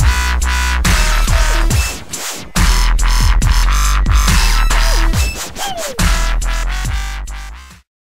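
Dubstep track: very deep bass under rhythmic synth hits and falling synth glides, with a short break about two seconds in. It cuts off abruptly just before the end.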